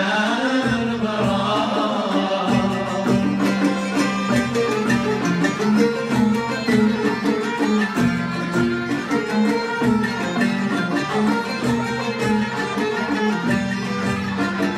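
Live Algerian Andalusian-style ensemble music: a male voice ends an ornamented, gliding sung phrase in the first couple of seconds, then violins, plucked lutes and keyboard play an instrumental passage with a steady repeating rhythm.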